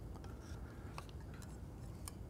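Faint scattered clicks and rubbing from hands shifting a camera rig back on a Cartoni Smart Head fluid head, over a low steady room hum.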